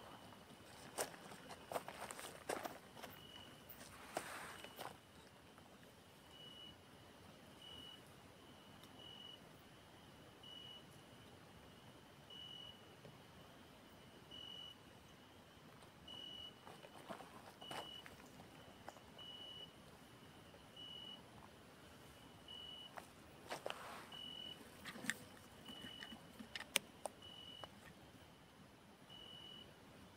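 A faint, short, high electronic beep repeating about every one and a half seconds, from a handheld frequency meter. Scattered crunches and rustles of footsteps on gravel and brush come in a few clusters, near the start, around the middle and toward the end.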